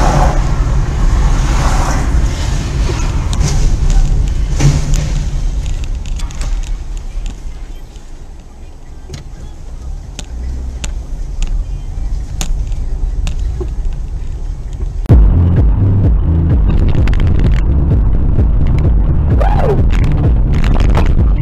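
Road and engine noise inside a moving car, a steady low rumble and hiss with scattered short clicks. About fifteen seconds in it cuts off abruptly to louder electronic dance music with a steady beat.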